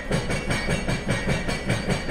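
Sea-Doo GTX-S 155's Rotax 1503 three-cylinder four-stroke being turned over by the electric starter without firing: even, rhythmic pulses from the compression strokes under a steady starter whine. The throttle lever is held fully down so that the engine cranks without starting and circulates the oil left in the bottom of the engine.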